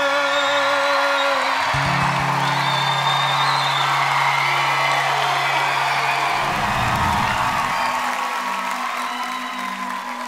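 A sung note ends about a second and a half in, then a studio audience cheers and applauds over held music chords. Near the end a soft, sustained musical intro begins.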